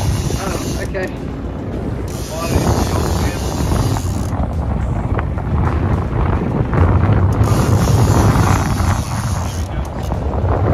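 Wind buffeting the microphone on a moving motor boat at sea, over the steady low rumble of the engine and the sea, getting louder in the second half.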